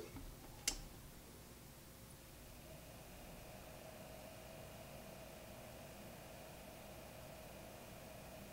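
Two small 40 mm cooling fans on the back of a Vantec EZ Swap M2500 four-bay drive rack running, heard as a faint steady hum with a thin whine that comes in two to three seconds in. There is a single click under a second in.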